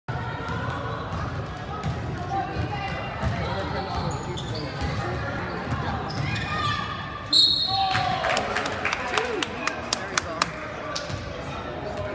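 Spectators chattering in a gymnasium, with a referee's whistle blown sharply once about seven seconds in, followed by a run of quick basketball bounces on the hardwood court.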